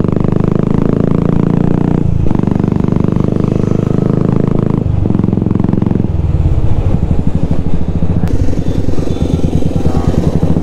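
Royal Enfield Classic 350's single-cylinder engine and exhaust heard from the saddle while riding. The note dips briefly about two and five seconds in, then settles into a lower, slower pulsing beat for the second half.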